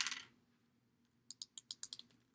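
Plastic lipstick tube being opened and handled: a brief rustle at the start, then a quick run of light plastic clicks near the end.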